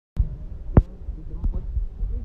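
Low rumble with a few knocks, one loud sharp knock a little under a second in: handling noise from a hand-held phone's microphone.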